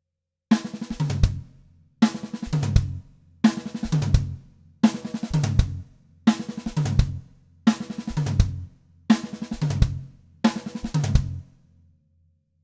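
Drum kit playing a short fill eight times, about one every one and a half seconds. Each time it opens with an accented snare stroke, runs quickly through further snare strokes, drops to the rack tom and the floor tom, and ends on a single bass drum note. The fill is a left-lead six-stroke roll with two added notes, used as a stop or setup fill.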